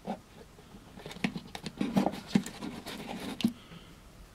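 Light handling noise: a scatter of small irregular taps and scratches, heaviest between about one and three and a half seconds in.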